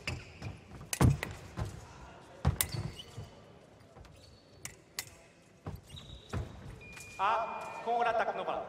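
Sabre fencers' feet stamping and slapping on the piste, a few sharp knocks spread through the first five seconds. About six seconds in a steady high tone sounds, and near the end a voice shouts.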